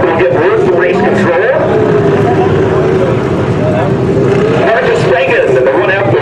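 Stock car engines running around the dirt track, their pitch rising and falling, with one engine note held steady for a couple of seconds midway.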